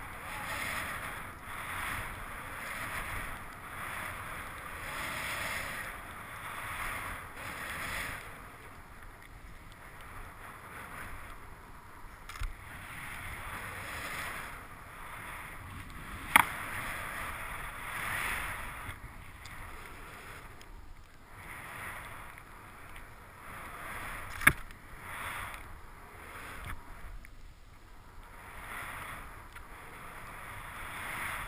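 Skis hissing through deep fresh powder snow, swelling and fading with each turn, with two sharp knocks about halfway through and again about three-quarters of the way through.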